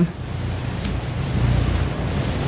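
Low rumbling noise on the microphone, growing a little louder about halfway through.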